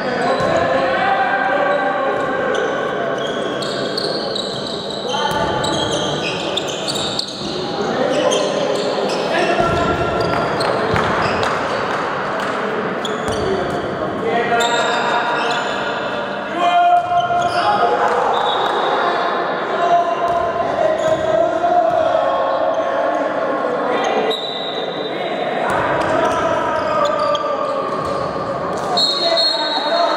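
Handball bouncing on a sports-hall floor during play, with players calling out, all echoing in a large hall.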